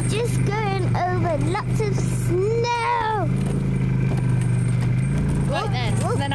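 Snowmobile engine running steadily under way, a constant low hum. Over it, a voice calls out in sliding, rising and falling tones during the first three seconds.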